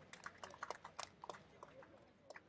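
Faint, sparse applause: a few people clapping by hand at an irregular pace, thinning out near the end.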